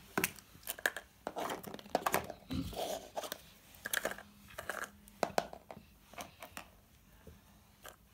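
Small plastic toys and trinkets being handled and put into a plastic bowl: irregular light clicks, taps and rustling.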